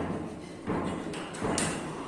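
Three dull thuds and knocks over gym background noise, the sharpest about one and a half seconds in.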